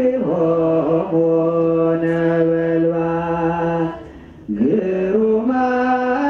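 A man's voice chanting an Ethiopian Orthodox hymn in long, steadily held notes. It breaks off briefly about four seconds in and then resumes, moving up and down in steps.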